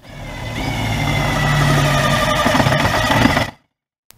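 Cordless power driver running a screw in the underside of a wall cabinet. Its motor whine builds over the first second, holds steady, and cuts off abruptly about three and a half seconds in.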